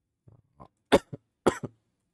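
A person coughing twice into a close microphone, about half a second apart, each cough sharp and loud with a brief tail.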